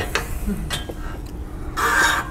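Light clicks and knocks of a braided steel hose and its brass fittings being handled at a gas cylinder's valves, with a short burst of rustling noise near the end.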